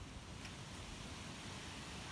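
Faint, steady background hiss with a low rumble underneath and no distinct event.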